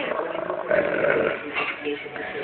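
German Shepherd dog growling, a continuous rattling growl that gets louder about a second in: a hostile warning growl.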